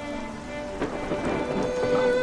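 Rain falling, with a burst of thunder just under a second in that fades over about a second, under soft string music.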